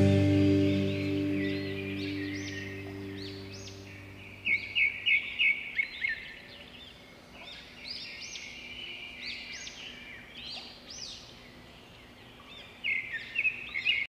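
A final held chord of the music rings out and fades away over the first few seconds. Small birds chirp in quick runs of short rising-and-falling notes, loudest about four and a half seconds in and again near the end.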